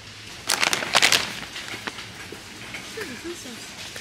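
A plastic potato-chip bag crinkling loudly as it is grabbed and handled, in a burst of rustles from about half a second to just over a second in, then fainter rustling.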